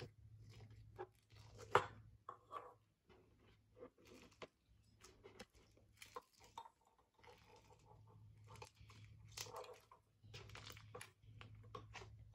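Beige slime full of small white foam beads being scooped out of its tub, then squeezed and stretched by hand, giving faint, irregular crackles and crunches. The loudest crackle comes about two seconds in.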